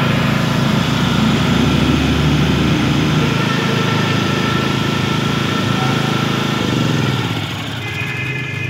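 Yaofeng YP3500E portable petrol generator engine running steadily. Near the end its note drops and it gets a little quieter as the engine speed falls.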